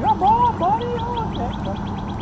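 A dog whining: several short high cries, each rising and falling in pitch, in quick succession over the first second and a half.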